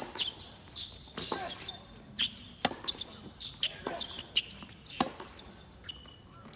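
Tennis rally on an outdoor hard court: racket strikes and ball bounces about every second and a quarter, the near player's shot loudest at the start. Short high shoe squeaks on the court surface come between the shots.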